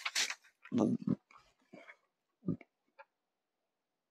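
A saree being flicked open with a swish of cloth, then soft thumps as the fabric lands on the table about a second in and again near the middle.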